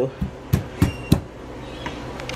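Pestle pounding pieces of fresh ginger in a mortar to crush them: four sharp knocks in quick succession, stopping a little past the first second.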